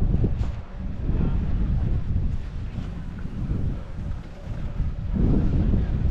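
Wind buffeting the microphone of a camera worn by a moving skier, a low rumble that surges and eases in gusts, with a fainter hiss of skis sliding on packed snow.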